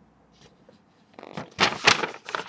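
A sheet of printer paper rustling and crackling as it is handled close to the microphone, in a few quick, sharp rustles during the second half after a quiet first second.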